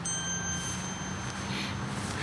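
A single high bell-like ding struck at the close of a music cue, ringing on and fading slowly, with its highest tone lasting longest.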